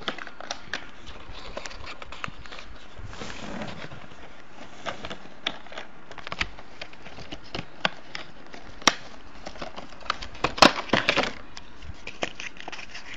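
Cardboard and clear plastic packaging handled and opened by hand: scattered small clicks and crinkles, with a run of louder snaps and rustles about ten seconds in as the plastic protective insert is pulled free.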